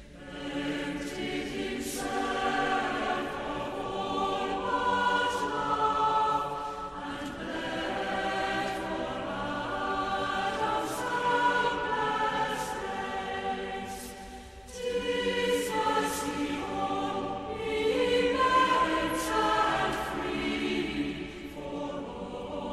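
A choir singing, with long held notes in several voices and a short break between phrases about two-thirds of the way through.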